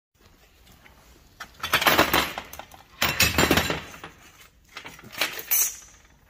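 Metal parts and tools clinking and clattering on a workbench in three short bursts: about two seconds in, about three seconds in, and near the end.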